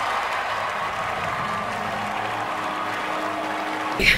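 Large theatre audience applauding steadily.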